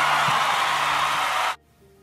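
A loud burst of even, hiss-like noise, edited in as a sound effect, lasting about one and a half seconds and cutting off suddenly. Soft background music with held notes plays underneath.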